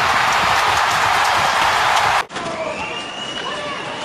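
Hockey arena crowd roaring after an overtime goal, loud and steady, cut off abruptly a little over two seconds in. Quieter arena crowd noise follows.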